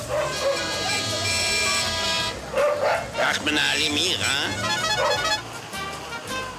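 Old film soundtrack of music and voices, opening with a long held note for about two seconds.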